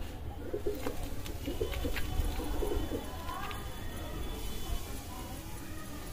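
Domestic pigeons cooing: about three low, rolling coos in the first three seconds, with a few light clicks among them.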